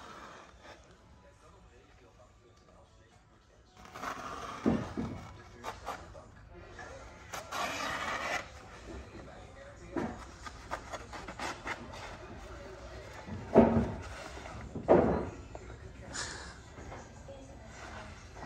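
Intermittent scraping and rubbing noises with a few knocks, from hands-on work with wooden siding boards. The first few seconds are quieter.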